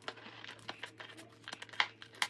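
Scissors cutting through thin clear plastic from a soda bottle: a run of short, sharp snips, the loudest near the end.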